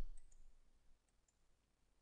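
A few faint computer mouse clicks in the first half second, then quiet room tone.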